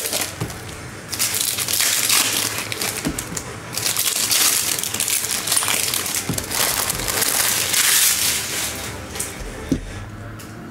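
Foil wrapper of a 2023 Topps Finest baseball card pack being torn open and crinkled, in several spells of crackling with short pauses between them. A single sharp tap comes near the end.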